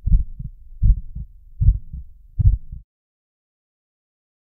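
Title-sequence sound effect: deep low thumps in a heartbeat rhythm, four pairs under a second apart, stopping about three seconds in.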